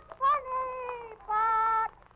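A man's childlike falsetto voice wailing in two long, drawn-out high notes, the first sliding slowly down and the second held level near the end, in an old radio broadcast recording.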